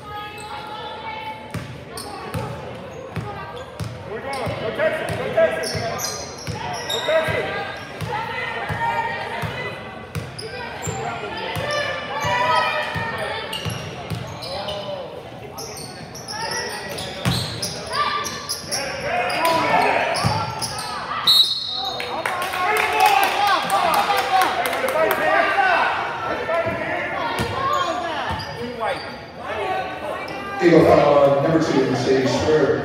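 A basketball bouncing and dribbling on a hardwood gym floor, with players' and spectators' voices echoing through the large hall.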